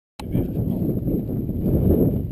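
Low, uneven rumble of wind and movement on the camera's microphone as the camera swings about, with no shots.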